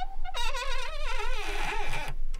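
Foley creaker (Knarzer) worked on a wooden resonance board, giving a long, wavering creak. After a brief break at the start it dips in pitch, then holds with a slow wobble and stops just before the end.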